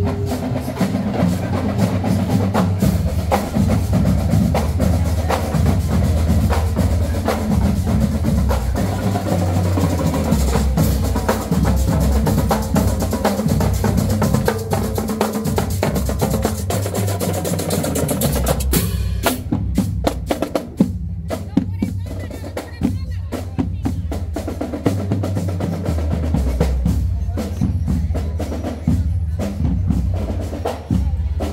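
Marching band playing in a street parade: a drumline of snare drums and bass drums beating a steady, dense rhythm under low brass. About two-thirds of the way through the brighter upper sound drops away, leaving mostly the drum strokes and the low notes.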